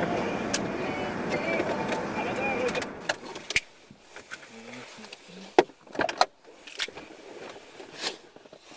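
Steady noise inside a car with muffled voices under it for about three seconds. It then drops away, leaving a few sharp clicks and knocks.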